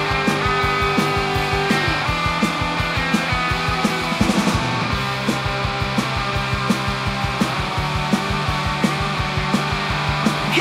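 Instrumental break in a punk rock song: electric guitar and bass over a steady drum beat, with no singing.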